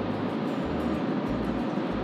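Steady tyre and wind noise heard inside the cabin of a Rivian R1T electric pickup cruising at highway speed, with a low uneven rumble underneath.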